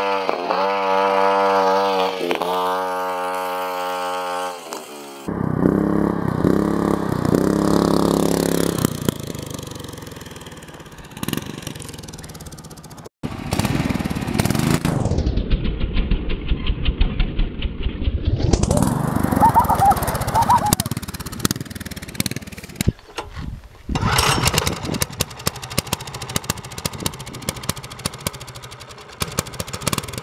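Small engines of homemade minibikes running and revving, heard across several cuts from clip to clip. Near the end one runs at low speed with a fast, even putter.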